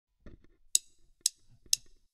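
Count-in of a 120 bpm drum track: three short, sharp ticks, evenly spaced half a second apart.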